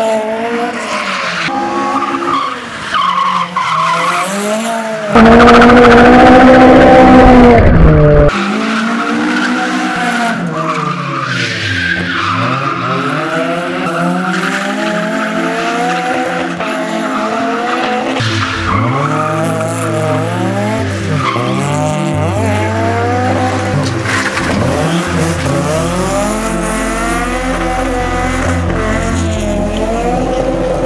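Naturally aspirated 20-valve 4A-GE four-cylinder of a Toyota AE86 Trueno revving up and down over and over as the car slides, with tyres skidding and squealing on damp pavement. The sound gets much louder for about three seconds around five seconds in.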